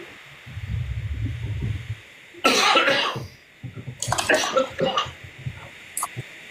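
A person coughing: one loud cough about two and a half seconds in, then a few shorter coughs a second or two later.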